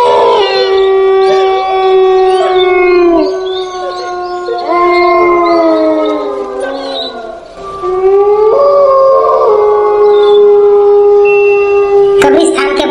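Canine howling sound effect: several long, overlapping howls, each held on one pitch and then falling away, with a new howl rising about halfway through.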